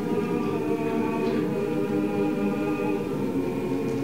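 Choir singing slow, sustained chords.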